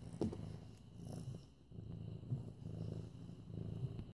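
Kitten purring steadily while being petted, the low purr pulsing in cycles with a short lull about a second and a half in. A brief knock about a quarter of a second in.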